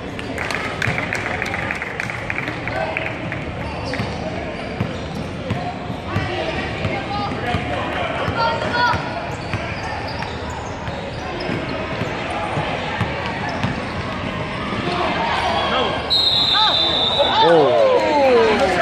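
A basketball bouncing on a hardwood gym floor during play, with scattered voices echoing in the large hall. About sixteen seconds in, a steady high whistle sounds for about a second and a half, fitting a referee's whistle.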